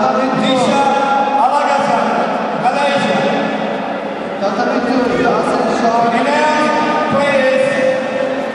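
Several men's voices shouting and calling out over one another, with long held calls, echoing in a large sports hall: spectators and coaches yelling during a karate bout.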